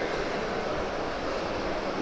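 Steady, even background noise of a busy exhibition hall, with no distinct clicks or knocks.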